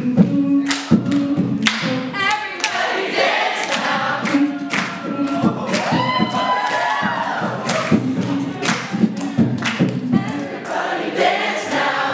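Beatboxing: a steady beat of sharp kick and snare hits made with the mouth, with a hummed low bass note and voices singing a tune over it.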